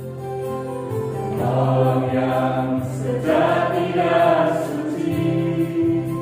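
A small vocal group singing a Christian worship song in harmony, accompanied by sustained electronic keyboard chords. The voices swell twice in the middle of the passage.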